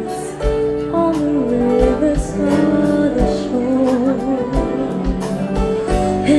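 Live band playing: a woman sings a melody over keyboard, electric bass and a drum kit, with recurring kick-drum hits and cymbals.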